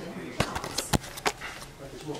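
A handful of sharp knocks and clicks over about a second and a half, the loudest about a second in, over faint room sound.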